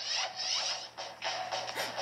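Music and sound effects from a children's TV show, playing through a portable DVD player's small speaker during a short scene transition.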